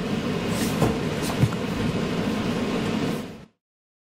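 EnviroKlenz air purifier fan running steadily with a couple of light knocks in the first second and a half; the sound cuts off suddenly about three and a half seconds in.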